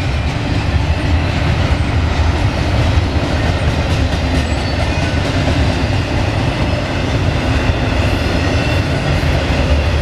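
Double-stack intermodal freight train's container well cars rolling past: a steady, loud rumble of steel wheels on the rails.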